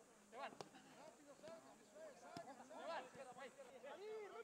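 Faint overlapping men's voices calling out at a distance, with a few short knocks.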